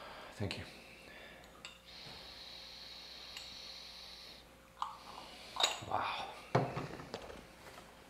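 A long sniff through the nose, about two and a half seconds, drawing in the aroma of brewed aged sheng puerh from a tasting cup; a couple of light clicks follow later.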